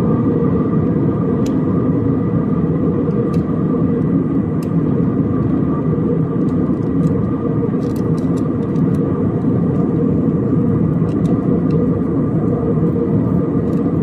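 Airliner cabin noise in cruise flight: a steady, dense rumble of engines and airflow, with a faint steady whine above it and a few faint clicks.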